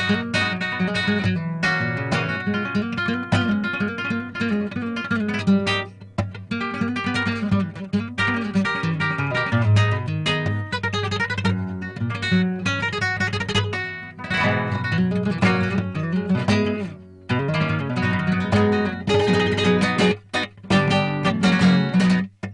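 Acoustic guitar playing flamenco: quick plucked runs and chords, with a few brief pauses between phrases.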